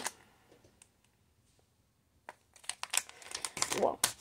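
Near silence for about two seconds, then crinkling plastic packaging and a few light clicks as toys and wrappers are handled, ending in a child's "Whoa".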